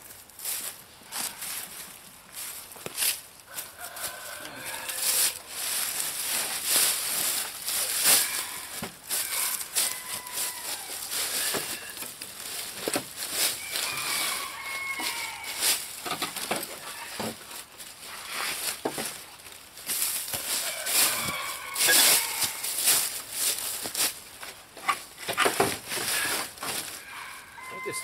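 Wooden pallets and boards being handled and shifted, giving repeated irregular knocks and clatter of wood on wood.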